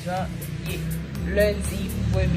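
A woman's voice over background music with a steady beat and a continuous low bass hum.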